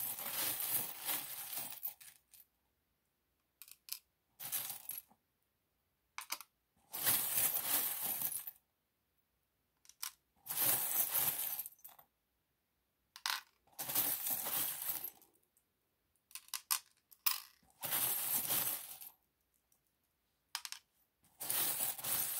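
Small metal charms jingling and clinking together as a hand rummages in a fabric pouch and draws them out, in short bursts of a second or two with silent gaps between.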